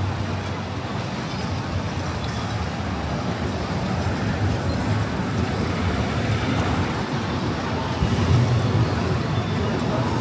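Outdoor amusement-park ambience: a steady wash of noise with a low rumble, swelling slightly about eight seconds in.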